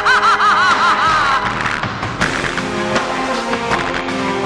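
A high, cackling laugh over orchestral show music, each 'ha' a quick arc of pitch, the run falling and dying away after about a second and a half. The music then goes on alone with steady held notes.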